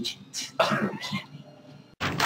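Brief wordless vocal sounds from a man, fading out after about a second, with the sound cutting off abruptly near the end.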